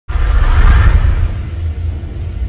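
Cinematic logo-intro sound effect: a deep rumbling boom with a rushing whoosh that starts suddenly and slowly fades.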